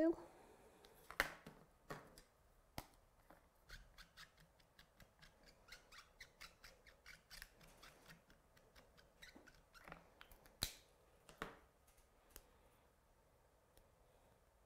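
Faint, scattered clicks and taps of a clear acrylic stamp block and marker pens being picked up and set down on a plastic stamping platform, with a few sharper clicks around one, three and eleven seconds in.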